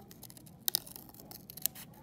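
Scissors cutting paper: a run of small snips and sharp clicks of the blades closing, the two loudest about a second apart.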